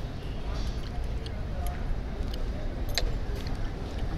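Metal fork and spoon scraping and clinking on a plate of curry-soaked roti as it is cut apart, with one sharper clink about three seconds in, over a steady low rumble of traffic.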